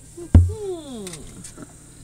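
A loud, sharp thump close to the microphone about a third of a second in, followed by a long, falling, voice-like tone that fades out over the next second.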